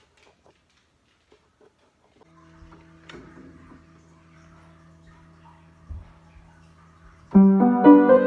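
Near silence, then a faint steady hum with a click and a soft thump, before an upright piano begins playing loudly a little after seven seconds in.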